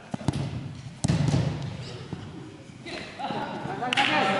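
Futsal ball kicked hard in a free kick, a sharp thud, then a louder bang about a second in as the ball strikes something, followed by players' voices.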